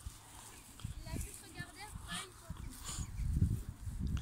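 Low rumble of wind on the microphone, growing louder near the end, with faint voices in the background.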